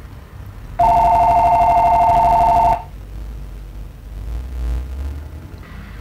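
Telephone ringing: one ring about two seconds long, starting a second in. It is a two-pitched ring with a fast flutter.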